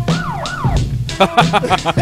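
Hip-hop beat played from an Akai MPC2000XL sampler: steady drums under a sample that slides up and down in pitch in the first second, then quick warbling pitched notes.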